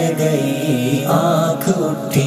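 A man singing a line of an Urdu ghazal in nasheed style, drawing out a long held note with bends in pitch.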